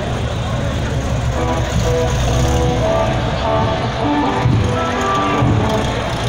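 A motor vehicle's engine running with a low rumble, over a background of crowd chatter and music.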